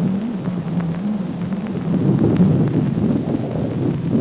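Doppler audio return of an AN/PPS-5 ground-surveillance radar: a low, wavering hum over a rough rumble, the characteristic tone by which the operator identifies a moving target.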